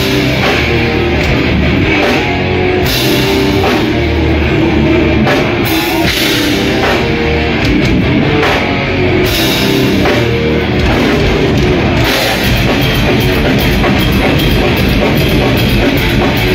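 Live heavy metal band playing loud and without a break: distorted electric guitar over a pounding drum kit. The high cymbal wash drops out and comes back several times as the song moves between parts.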